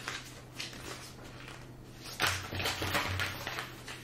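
Paper and plastic rustling with a few soft taps, mostly in the second half, as a booklet and sticker sheet are handled and laid on a plastic-covered canvas.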